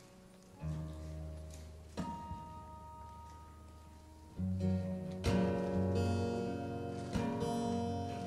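Two acoustic guitars playing the slow instrumental intro of a song: chords struck every second or two and left to ring, quiet at first and fuller and louder from about halfway through.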